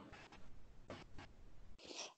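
Near silence: faint background noise with a few faint, brief scratching sounds.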